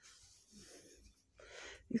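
Quiet room tone with a soft intake of breath about a second and a half in.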